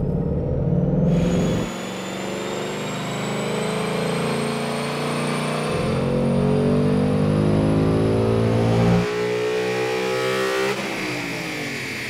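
A 2018 Mustang GT's 5.0 Coyote V8, fitted with a PMAS cold air intake and a VMP tune, making a full-throttle pull in fourth gear on a chassis dyno. The engine note climbs steadily in pitch for about seven seconds, cuts off suddenly as the throttle is closed, and winds down in pitch near the end.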